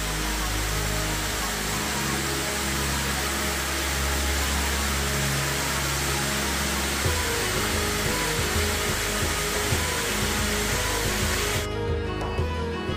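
Steady rush of a cascading waterfall, with background music playing underneath. The water noise stops abruptly near the end while the music continues.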